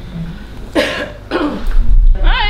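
A person coughing twice in quick succession, the coughs a little over half a second apart.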